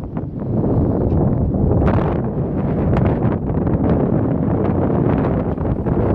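Wind blowing hard across the microphone: a loud, steady low rumble that swells and dips with the gusts.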